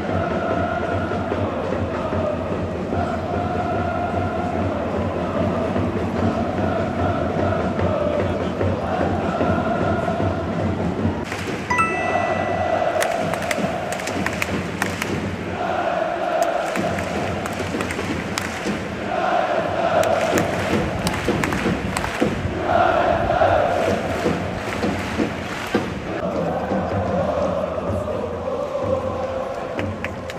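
A large football crowd of Urawa Reds supporters chanting in unison, in repeating sung phrases punctuated by sharp rhythmic hits. A whistle sounds once for about a second roughly twelve seconds in.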